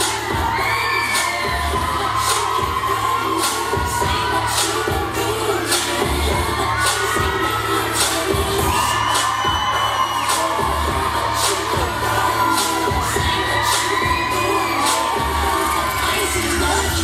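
Dance-routine music with a heavy beat playing over an arena PA, with a crowd shouting and cheering over it throughout.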